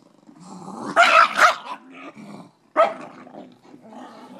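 Pug growling and barking while guarding its chew bone from a reaching hand, in a loud outburst about a second in and a shorter sharp one near three seconds.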